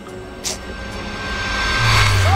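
Scene-transition whoosh effect: a short sharp swish about half a second in, then a rushing noise that swells steadily, with a deep bass note coming in near the end as background music starts.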